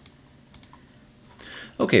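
A few faint computer keyboard clicks in the first second, advancing a slide.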